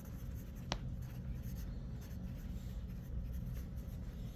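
Quiet classroom room tone with a steady low hum, faint scratching of a pen writing on paper close by, and a single sharp click a little under a second in.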